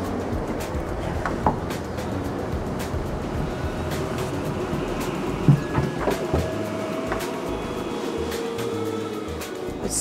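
Background music, with a bass line that changes notes every fraction of a second.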